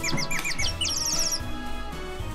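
A quick run of short, high bird chirps in the first second, over steady background music.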